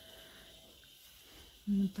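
Near silence: faint steady background hum, then a woman starts speaking near the end.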